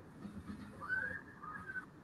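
A faint, high whistle-like tone that rises slightly and then holds for about a second, over quiet room noise on a video call.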